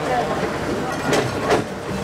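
Recycling-plant conveyor line running with a steady hum and rattle while bagged recyclables tumble onto the belt, with two sharp knocks about a second and a second and a half in.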